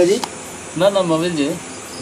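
Crickets chirping in the background, a steady high-pitched trill under a man's talk.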